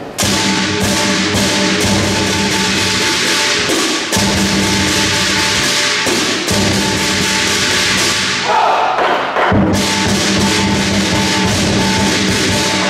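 Lion dance percussion: a large drum beaten in fast, dense strokes with clashing cymbals and a ringing gong, starting suddenly just after the start. It breaks off briefly about eight and a half seconds in, then comes back.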